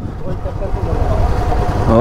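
Royal Enfield Standard 350's single-cylinder engine running at low speed as the bike is ridden through traffic, a steady low rumble.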